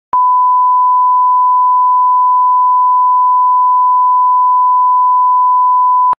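Broadcast line-up test tone played with colour bars: one steady, loud 1 kHz pure tone that starts with a click just after the start and holds unchanged throughout.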